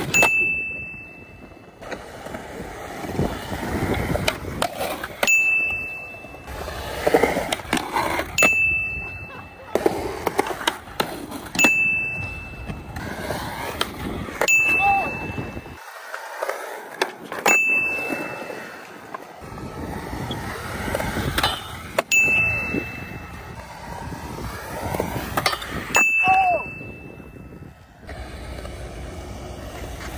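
Mini skateboard with small hard wheels rolling on concrete, with tail pops, slaps and landings of the board as tricks are thrown. A short, high bell-like ding comes every three to five seconds, about eight times in all, each starting on a sharp click.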